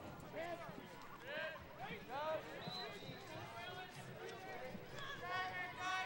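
Faint, scattered shouts and calls from players and coaches on a lacrosse field, several short voices overlapping.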